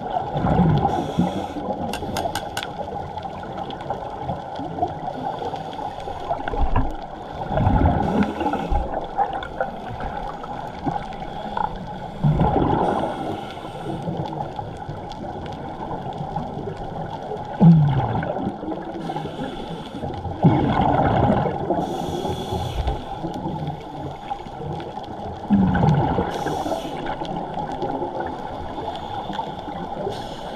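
Water sloshing and gurgling in surges every four to five seconds, over a steady hum.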